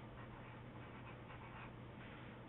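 Faint scratching of a pencil on paper as a word is written out in short strokes, over a low steady hum.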